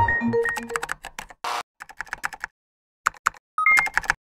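A music sting ends in the first half-second, then come quick runs of typing-like clicks, a short hiss about a second and a half in, and a few more clicks with a brief electronic tone near the end: a typing sound effect for on-screen text being spelled out.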